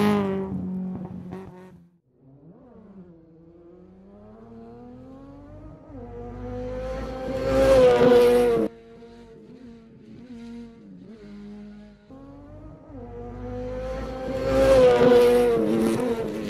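Traxxas Slash 2WD RC truck's electric motor and drivetrain whining, the pitch rising and falling with the throttle as it drives through sand. The whine fades out about two seconds in, then swells twice to a loud pass, once about eight seconds in and again near the end, each ending abruptly.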